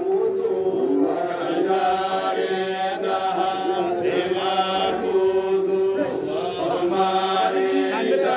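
A group of men chanting a Qadiriya Sufi dhikr in unison into handheld microphones, with long held notes.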